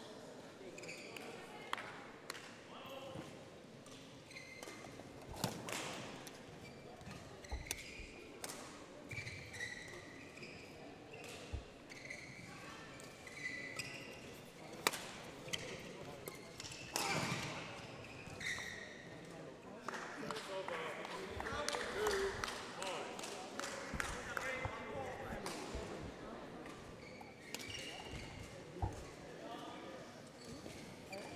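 Badminton hall ambience: distant voices murmuring, with scattered sharp hits and short shoe squeaks from play on neighbouring courts, echoing in the large hall.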